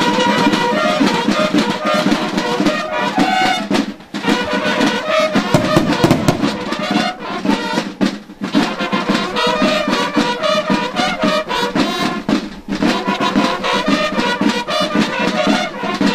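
Brass band music playing loudly: trumpets and trombones over drums, with short breaks between phrases.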